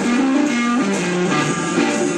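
Live blues band playing, an electric guitar to the fore with notes that change from moment to moment over the band.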